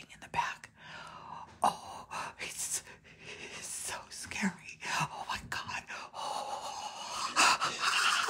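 A person whispering and gasping close to the microphone, with a few sharp taps or clicks, the loudest about a second and a half in and near the end.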